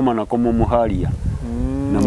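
A man talking, with one long drawn-out vowel near the end.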